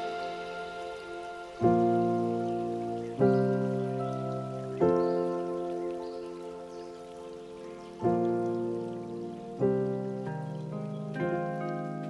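Slow, calm lofi music: soft sustained chords, a new chord struck roughly every one and a half seconds (one held about twice as long), each swelling in and fading away, with no drumbeat.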